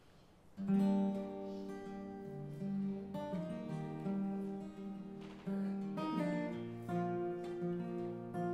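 Steel-string acoustic guitar with a capo starting a song intro about half a second in, chords ringing and changing every second or so.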